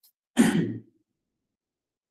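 A man's short, breathy sigh, lasting about half a second and starting just after the beginning; the rest is silent.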